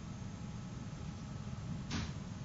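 Steady low hum of room noise, with one short swish just before the end.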